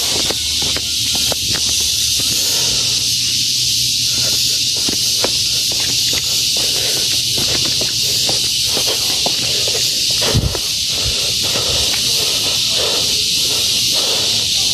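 A steady high-pitched hiss of forest insects runs throughout, with quick footsteps on concrete steps. A single dull thud comes about ten seconds in.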